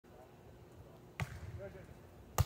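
A single sharp smack of a volleyball off a player's forearms in a pass, about a second in.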